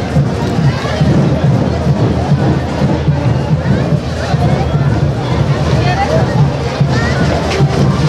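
Brass band playing diablada music with a steady pulsing beat, with crowd voices and chatter close by that come forward in the second half.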